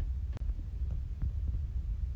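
Low rumble and dull, uneven thumps of a handheld phone being carried while walking, with a few faint clicks, the clearest about half a second in.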